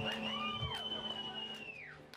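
Live band's stage sound dying away: a long high whistling tone glides up, holds and slides down near the end, with two shorter arching tones below it in the middle, over a low steady drone, all fading out.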